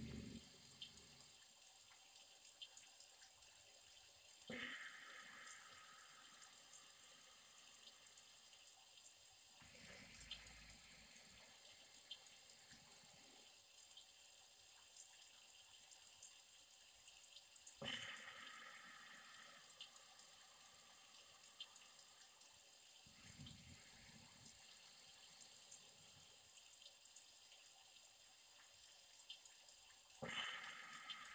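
Near silence: a faint steady hiss with soft, slow breaths every several seconds, a person doing paced three-part yoga breathing (Dirga pranayama: in for three, hold for four, out for five).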